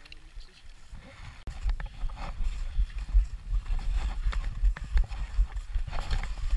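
A stream trickling quietly, then from about a second and a half in, skis sliding and scraping over snow with a loud low rumble of wind on the helmet camera and irregular knocks.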